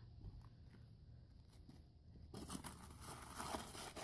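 Gritty scraping of a trowel working dry concrete mix in a plastic mixing tub, starting a little over halfway in.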